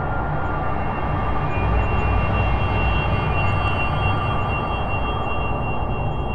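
Eerie ambient sci-fi drone: a steady low rumble with a few faint, sustained high tones.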